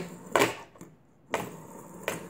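Two sharp clacks of a plastic fidget spinner being handled and flicked on a tabletop, about a second apart, with near silence between them.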